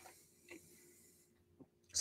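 A faint sip of beer from a glass, a soft hissing slurp, with a couple of small lip or glass clicks.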